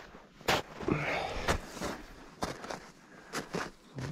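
Footsteps crunching on frozen, crusted snow, about one step a second.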